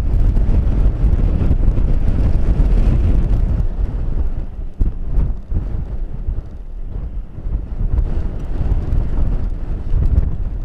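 Strong wind of a ground blizzard buffeting the microphone: a loud, deep rumble that surges and eases with the gusts, dropping briefly about five seconds in.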